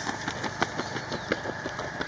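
Outdoor sound from a road race: a steady low hum with many irregular light taps and clicks through it.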